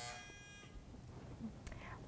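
Quiz-show time-up buzzer sounding once: a single short electronic buzz lasting about two-thirds of a second, fading out. It signals that time ran out before the team answered.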